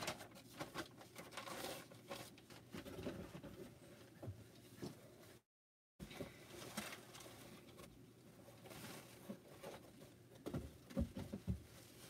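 Faint, irregular rustling and crinkling of paper and a plastic bag being handled while a mailed package of quilt blocks is unpacked. A few soft thumps come near the end.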